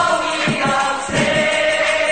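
Music: a group of voices singing a sing-along chorus together over a steady thumping beat, holding one long note through the second half.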